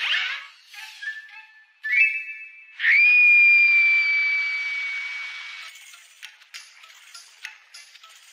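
Cartoon sound effects with music: a few short steady tones, then a loud, long high whistle about three seconds in that slides up, settles and slowly sinks as it fades out near six seconds, followed by light clinking clicks.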